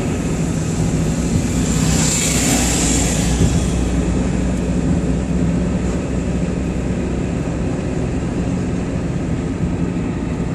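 Cabin noise of a moving car: a steady low rumble of engine and tyres on the road, with a louder rushing hiss swelling and fading about two to three seconds in.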